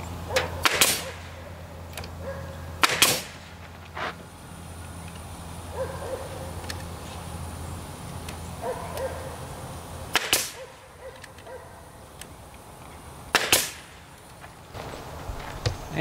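Pneumatic nail gun firing nails into a wooden box, four sharp shots spaced a few seconds apart, with a few lighter clicks between them.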